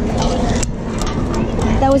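Wind rumbling on the microphone, with faint voices in the background and a few light knocks; a boy starts speaking near the end.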